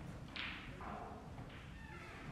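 Snooker balls knocking on the table after a shot: a sharp knock about half a second in, then a softer one just before the one-second mark.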